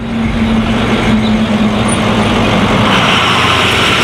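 A school bus driving by: steady engine and road noise with a low hum that fades, and a stronger hiss from about three seconds in.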